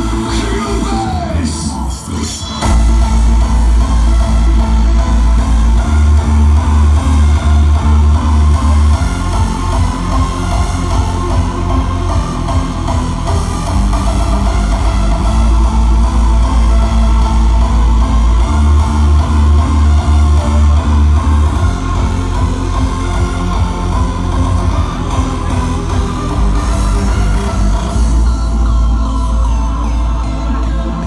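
Loud hardstyle dance music over a festival sound system. After a brief drop-out about two seconds in, a heavy distorted kick and bass come in and drive a steady beat.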